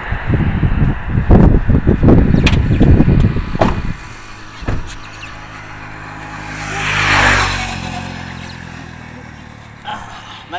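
A minivan's engine running at the roadside, with a loud, uneven low rumble for the first four seconds that then settles into a steady idle. About seven seconds in, a passing vehicle on the road swells and fades.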